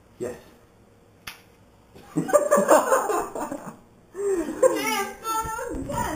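A few people laughing, with one sharp click from a spring airsoft pistol about a second in.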